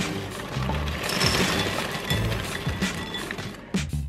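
Dry toast-shaped cereal pouring from its bag into a glass bowl: a continuous rattling patter for about three seconds that fades near the end, over background music.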